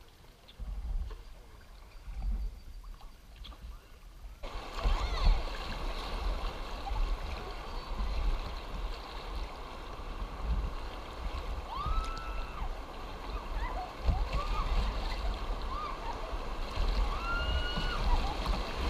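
River water rushing and splashing around a kayak's bow as it runs through a riffle, with low rumble from wind on the microphone. The water sound jumps suddenly louder and fuller about four and a half seconds in.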